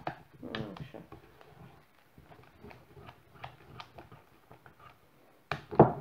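Whisk knocking and scraping against a saucepan as it stirs a thickened starch mixture, in faint, irregular clicks.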